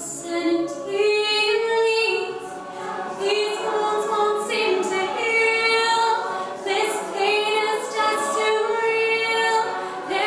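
A mixed a cappella choir singing in sustained held notes, with a female soloist on a microphone leading over the massed voices of the ensemble.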